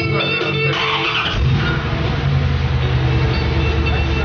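A car engine starts about a second and a half in and keeps running with a deep, steady low rumble, over guitar music.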